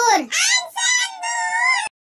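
A high-pitched, child-like voice chanting a line of a Hindi alphabet rhyme in a sing-song tune, in several short phrases that cut off abruptly just before the end.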